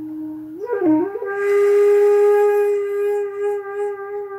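A flute playing a slow melody: a held note, a short wavering bend about a second in, then a long held higher note.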